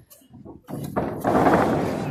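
A moment of near silence, then the noise of a small live wrestling crowd comes in under a second in and holds steady, with a knock or two as it begins.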